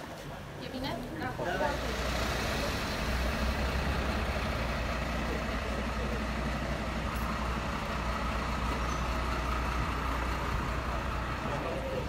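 A vehicle engine running steadily, a low even rumble that sets in about a second and a half in and holds, with voices in the background.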